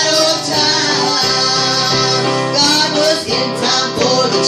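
Live music from a small worship band: a woman singing over keyboard and string accompaniment, the song carrying on without a break.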